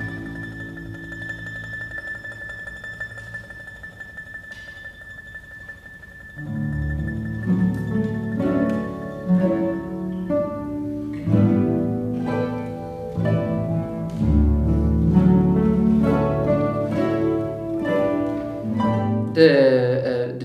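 Mandolin orchestra of mandolins and mandolas playing: a soft held chord dies away, then about six seconds in a louder passage of plucked notes starts over a bass line.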